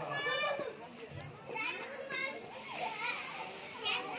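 Overlapping voices of children and women talking and calling out, several of them high-pitched.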